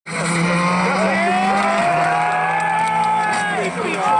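Rally car engine at high revs, its note climbing gradually for about three seconds and then dropping away near the end as the throttle comes off.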